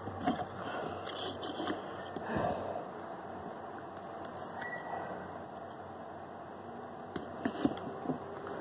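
Faint scrapes and small clicks of a soldering iron tip and fingers handling an LED bulb's circuit board, over a steady low hiss; a few sharper clicks stand out, the loudest near the end.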